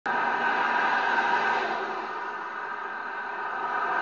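Steady road traffic noise, easing slightly in the middle.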